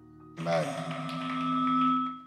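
Church keyboard music: soft held notes, then about half a second in a loud sustained chord swells up while the congregation cheers and shouts over it, fading away at the end.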